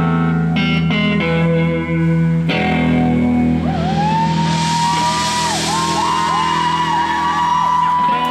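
Live rock band with electric guitars, bass and drums holding sustained chords over a low drone; from about halfway a lead electric guitar plays a high, wavering note that bends down and back up again and again, over a swell of cymbal wash.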